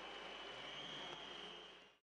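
Faint steady background hiss with a thin high-pitched whine, fading out in the last half second.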